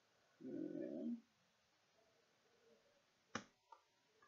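A short, low-pitched noise lasting under a second, then a sharp click with a smaller one just after it near the end, as a plastic opening tool pries at the laptop keyboard's retaining clips.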